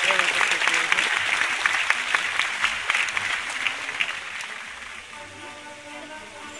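A large audience clapping, thick and loud at first, then dying away over the last two seconds.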